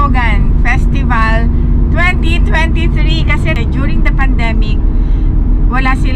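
A woman talking inside a moving car, over the steady low hum and road noise of a Toyota Vios heard from inside the cabin.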